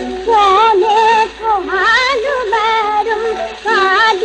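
A Sindhi song: a solo voice sings an ornamented melody with wide vibrato over a steady, held accompaniment tone, pausing briefly twice between phrases.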